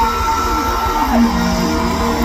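Live band music played loud over a concert PA, with heavy bass and a held high note, guitar-like, that slides down about a second in.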